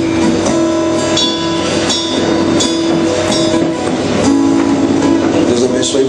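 Slow instrumental worship music played on guitar, with long held chords and gentle strums.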